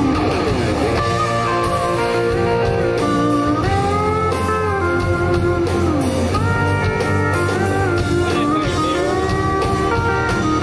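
Live country band playing an instrumental break: a lead line of sliding, bending guitar notes from pedal steel and electric guitar over bass and drums.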